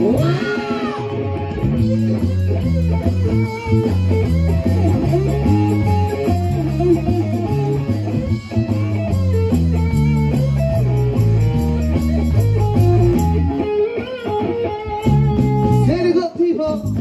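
Live band playing an instrumental passage with no singing: electric guitar over a bass line that steps from note to note.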